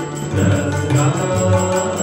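Sikh kirtan: a harmonium holds sustained chords while tabla plays quick, steady strokes, under a voice chanting a Gurbani hymn.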